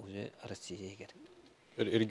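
A man's voice in short, quiet, hesitant sounds, including a brief hum that rises and falls in pitch, before fuller speech resumes near the end.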